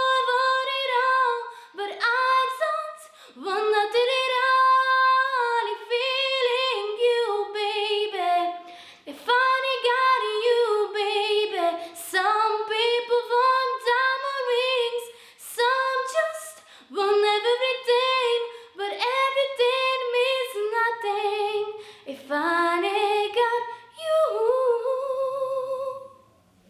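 A teenage girl singing a song unaccompanied, in phrases of a few seconds with short breaths between, some held notes wavering with vibrato.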